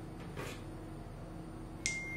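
Faint room hiss, then near the end a sudden start of a steady, high-pitched single-tone electronic beep.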